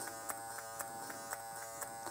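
BaBylissPRO cordless clipper's rotary motor running with a steady, quiet buzz, with a few faint clicks as the taper lever is moved back and forth. It keeps running without cutting out, now that the tension spring no longer rubs against the rotary motor.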